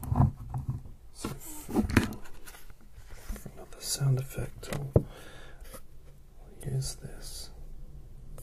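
Close-miked handling noise as art supplies are picked up and moved about, with several sharp knocks and clicks, and soft breathy whispering between them.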